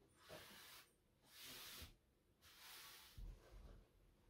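Near silence with three faint, soft swishes of about half a second each, a second or so apart: fabric being handled and slid against itself.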